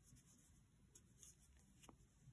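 Near silence, with faint rubbing and a few small clicks from a 6 mm aluminium crochet hook working single crochets in t-shirt yarn.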